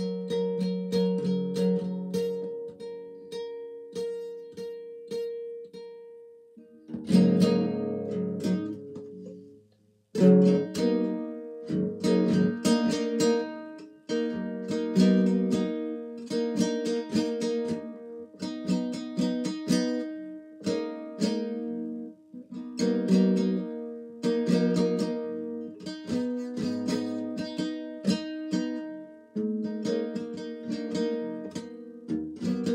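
Classical (nylon-string) acoustic guitar played freely: picked notes and chords ringing and fading one after another, with a fuller strum about seven seconds in and a brief stop just before ten seconds before the playing resumes.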